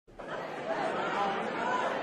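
Indistinct chatter of many voices in a crowded pub, fading in over the first half second and then holding steady.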